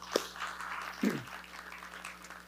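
Congregation applauding, the clapping fading away over about a second and a half, with a brief voice about a second in.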